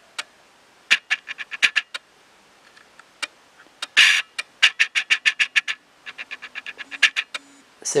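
Bursts of quick, light clicks, up to about eight or nine a second, coming in runs with short gaps; the loudest click is about four seconds in.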